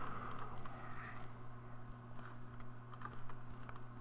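A few faint, scattered clicks of a computer keyboard and mouse over a steady low hum.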